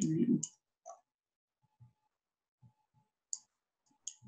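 Computer mouse clicking: one short, sharp click about three seconds in, otherwise near silence.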